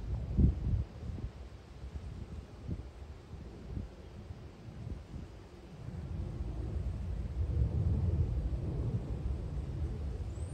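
Wind buffeting the microphone: a low, uneven rumble with a few thumps at the start, easing off for a few seconds and then growing stronger again in the second half.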